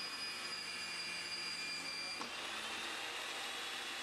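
Ridgid 300 power drive running steadily while its quick-opening die head cuts a thread on 2-inch steel pipe: an even motor and gear hum, with a faint click about two seconds in.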